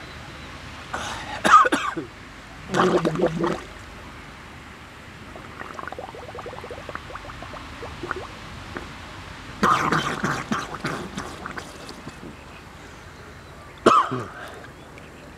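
A man coughing and clearing his throat in short fits: about a second in, around three seconds, and again around ten seconds. Between the fits there is the low sound of water lapping, and a sudden splash comes right at the end.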